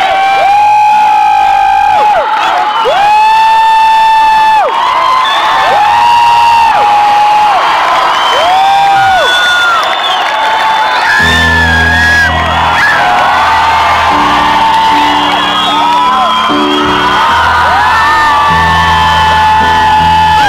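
Live concert: a voice sings long held notes through the PA, sliding into and out of each pitch, over crowd cheering. About eleven seconds in, low bass and chord notes come in under the singing.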